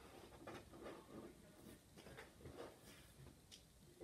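Faint rustling and a few light ticks of blue painter's tape being peeled off the paper of an oil-pastel card.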